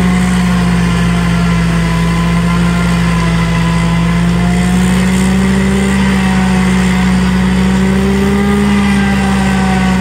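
Diesel tractor engine and its tractor-driven forage harvester running steadily under load while chopping tall sorghum: a constant drone that holds the same pitch throughout.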